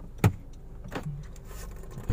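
Low, steady hum of a car cabin with the engine running, broken by a sharp click about a quarter second in and a softer click about a second in.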